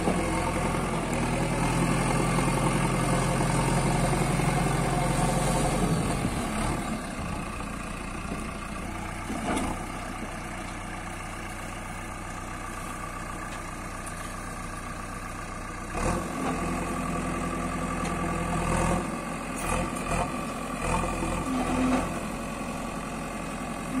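JCB 3DX backhoe loader's diesel engine running steadily, louder for the first quarter and then quieter. Scattered knocks and clanks come in over the last third as the backhoe bucket works the soil.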